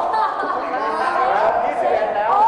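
Several people talking over one another: overlapping chatter in a room.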